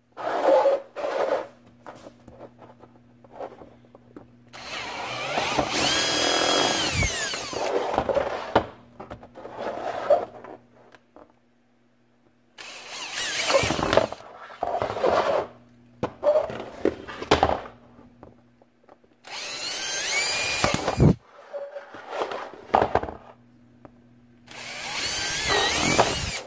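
Cordless drill with a twist bit boring holes through the corners of a clear plastic storage-container lid, in four short runs of a few seconds each, the longest about 3 s. The motor's whine rises and falls as it speeds up and slows, with clicks and plastic handling sounds between runs.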